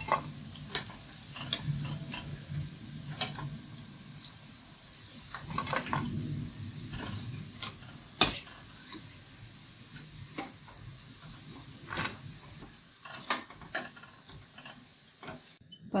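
A slotted spoon clinking and scraping against a steel frying pan and bowl as crispy deep-fried baby corn is scooped out of the oil, in scattered knocks with the sharpest about halfway through, over faint sizzling of the hot oil.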